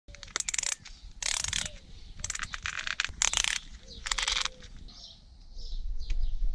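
Ratcheting closure dial on a cycling shoe being turned by hand to tighten it: five short bursts of rapid clicking about a second apart.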